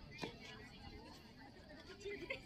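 Faint background chatter of people talking at a distance, with one brief sharp click about a quarter second in.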